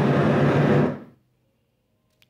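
Synthesized space-sound track presented as the sound of Jupiter's moon Kallichore, played from a screen: a dense, hissing drone over a steady low hum that fades out about a second in.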